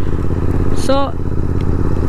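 Royal Enfield 650 parallel-twin motorcycle engine running steadily while cruising, heard from the rider's seat, with no revving.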